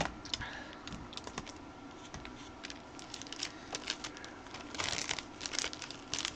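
Clear plastic sleeve of a stamp set crinkling as it is handled, with scattered small clicks and taps of things being picked up and set down. The crinkling thickens briefly near the end.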